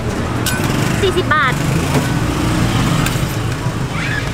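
A motor vehicle engine running close by on the street, a steady low hum throughout.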